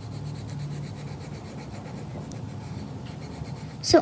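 Colored pencil shading on sketchbook paper: soft, rapid back-and-forth scratching strokes of the pencil tip.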